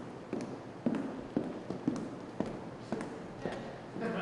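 Footsteps on a wooden stage floor, about two steps a second, each a short knock.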